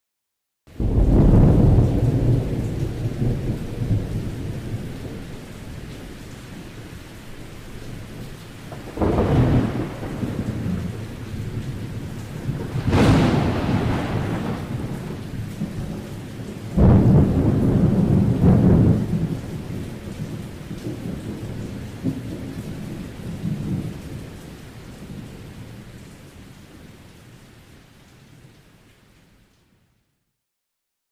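Thunderstorm with steady rain and several long rolls of thunder, the first just under a second in and another loud peal with a sharp crack a little before the middle; it fades out at the end.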